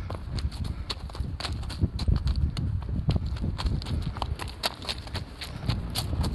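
Hurried footsteps crunching on railway track ballast, an irregular run of gravel crunches several a second with low thuds underneath.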